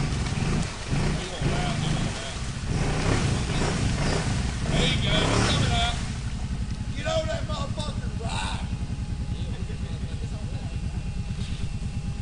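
ATV engine running, louder and rougher for the first few seconds, then settling into a steady idle about six seconds in. Shouting voices come over it in the middle.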